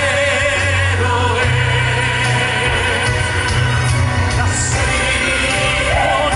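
Mixed choir singing a hymn with vibrato over a sustained instrumental accompaniment, the bass changing note every second or so.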